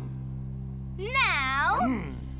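A cartoon character's wordless, high-pitched vocal sound about a second in, its pitch rising, falling and rising again over just under a second, above a low steady hum.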